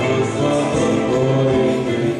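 A choir singing a church hymn with instrumental accompaniment, voices holding sustained notes at a steady level.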